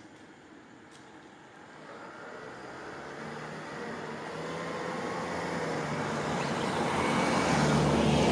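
A motor vehicle approaching, its engine sound growing steadily louder over several seconds.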